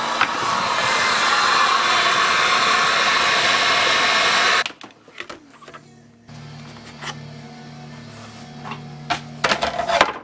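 Heat gun blowing steadily on the vinyl top of a Nissan R32 GTR dashboard to soften the lifted, bubbled skin, then switched off abruptly about halfway through. After it come a few light knocks as the dash is handled.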